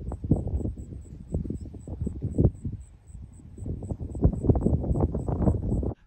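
Outdoor field sound of rustling and wind buffeting the microphone, uneven and crackly, with a faint high tick repeating about four times a second.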